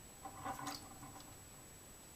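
The 3D-printed plastic paddle wheel of a Mascall Mill mouse trap spinning and clattering briefly as a mouse on a paddle is tipped off into the bucket of water below, with a faint click a moment later.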